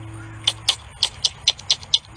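A quick run of sharp mouth clicks, about four a second, starting about half a second in, made to coax a chipmunk closer to an outstretched hand of nuts.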